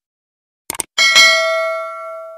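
A quick double mouse-click sound effect, then a bright notification-bell ding a moment later that rings on with several clear tones and slowly fades.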